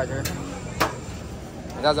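Two sharp knocks about half a second apart, a metal spoon striking a steel serving plate as kheer is dished out, over a steady low street rumble.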